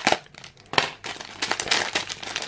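A plastic LEGO minifigure blind bag being torn open and crinkled by hand. There are sharp rips at the start and about a second in, then denser crackly rustling.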